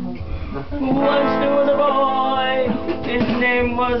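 Electric guitar being strummed, with chords ringing on from about a second in. A voice starts singing near the end.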